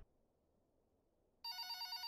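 Silence, then about one and a half seconds in a telephone starts ringing with a steady, abrupt ring.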